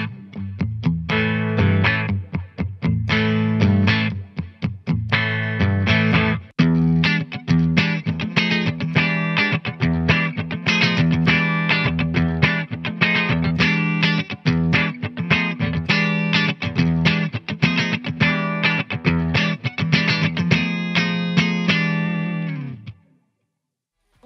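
High-gain distorted electric guitar riffs from a Diezel VH4 amp sound played through a miked 4x12 guitar cabinet, switching between the Brainworx plugin model and the real tube amp. The playing runs with rapid chugs and short stops, then ends about a second before the end.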